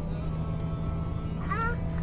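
Low, steady engine drone of an off-road vehicle heard from inside the cab while driving slowly. About one and a half seconds in, a small child gives a short, high, whiny cry.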